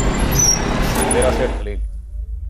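Motorcycle engine and road noise, loud and dense with a heavy low rumble, cutting off abruptly about one and a half seconds in and leaving only a low hum.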